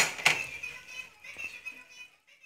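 Two sharp clinks of a small porcelain saucer against a steel cooking pot, about a quarter second apart near the start, followed by a faint steady high tone.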